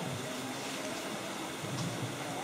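Steady background noise with no distinct event: an even hiss-like ambience with faint, indistinct sounds beneath it.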